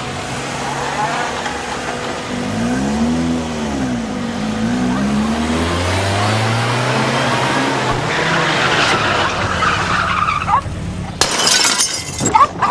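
Police car engine revving up and down as it drives fast, then the tyres squeal under hard braking as it pulls up; the sound cuts off sharply about eleven seconds in.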